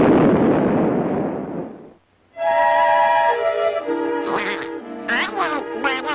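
A cartoon explosion from a clock bomb, a loud blast that dies away over about two seconds into a moment of silence. Then orchestral music with held chords comes in, with Donald Duck's quacking voice over it.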